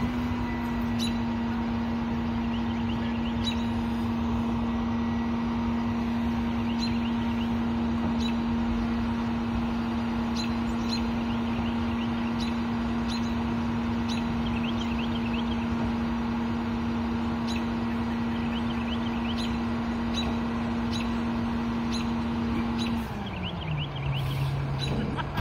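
Rear-loader garbage truck running with a steady, high-pitched hum from its engine and packer hydraulics, held at one pitch; about a second before the end the pitch slides down and settles lower as the truck drops back toward idle.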